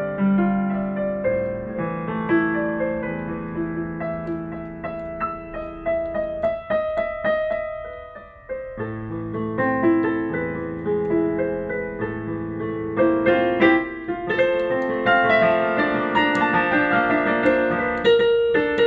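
Digital piano being played with both hands: a slow melody over held low notes, a brief near-pause about eight seconds in, then a louder, busier passage of more notes and chords.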